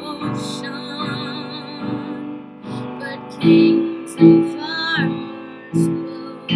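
A woman singing long held notes with vibrato over an accompaniment of struck chords. The loudest chords come about three and a half seconds in, again just after four seconds, and near the end.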